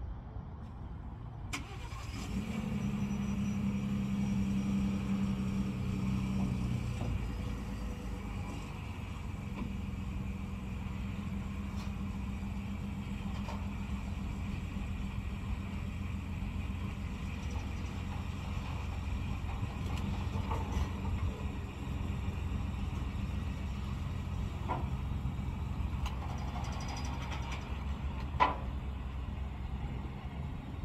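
A Ford F-150 pickup's engine starting about a second and a half in, running at a raised idle for several seconds, then settling to a steady lower idle while the truck is backed slowly down the car-hauler trailer's ramps. A single sharp knock near the end.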